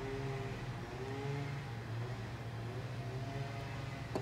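A running engine or motor in the background, heard as a steady low hum with faint tones that drift slightly up and down in pitch.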